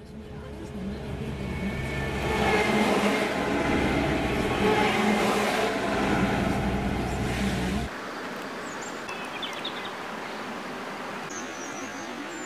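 Heavy seismic-survey trucks and a van driving past on a wet road, with engine hum and road noise building over the first couple of seconds and staying loud. The noise cuts off suddenly about eight seconds in, leaving a quieter steady background with a few faint high chirps.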